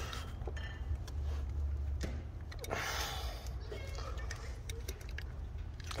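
Faint rubbing and light clicks of a replacement oil filter return tube being pushed and worked into the 6.0 Powerstroke's oil filter housing by a gloved hand, a tight fit that won't slide in easily. A steady low rumble runs underneath.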